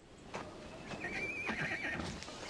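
A horse whinnying about a second in, one wavering high call lasting most of a second, with faint scattered knocks and clicks around it.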